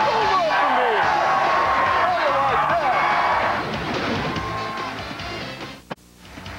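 Music mixed with a crowd shouting and cheering, fading down over the last couple of seconds.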